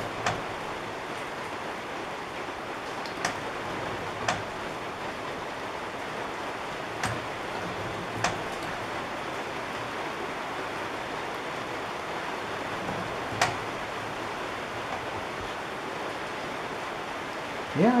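Steady hiss with a handful of sharp, irregular clicks as a pointed lathe tool is run in and back through a steel backing plate's bore, cutting a keyway slot a few thousandths per pass with the spindle locked.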